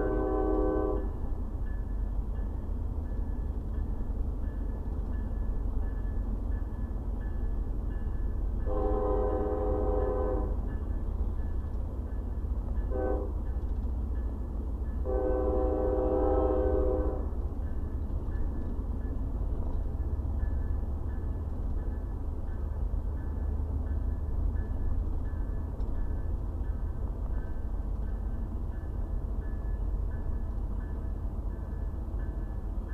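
Berkshire and Eastern freight locomotive horn sounding the grade-crossing signal: the end of one long blast, then a long, a short and a long. The steady low rumble of the pacing car's road noise runs beneath it.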